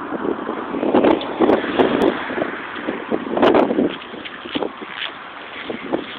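Handling noise from a phone's microphone rubbing and bumping against a shirt: an uneven scratchy rustle with louder surges about a second in and again past the middle.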